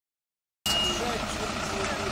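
Silence, then a little over half a second in the sound cuts in suddenly: a MAN fire engine's diesel engine running at idle, a steady low rumble, with people talking over it.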